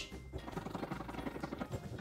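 Scratch-off coating on a paper savings-challenge sheet being scratched away by hand: a fast run of small, soft scraping ticks.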